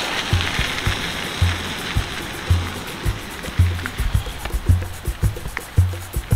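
Background music with a steady low beat about once a second and lighter percussion ticks between the beats.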